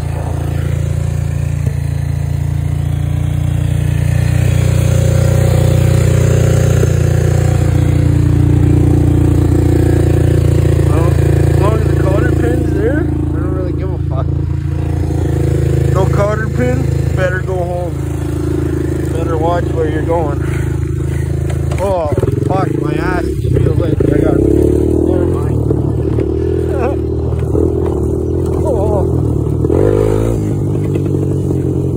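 Honda TRX250EX ATV's single-cylinder four-stroke engine running steadily, its pitch shifting about two-thirds of the way through.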